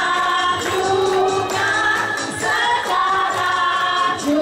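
A woman singing into a microphone over backing music, with a group of voices singing along and hands clapping.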